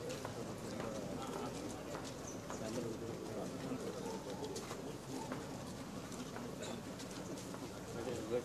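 Indistinct chatter of a small group walking together, with scattered footsteps and light clicks.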